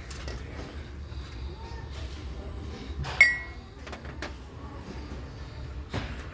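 Steady low hum of store room tone, and about three seconds in a single sharp clink with a brief ringing note: a ceramic piece knocking against a metal shelf as it is handled.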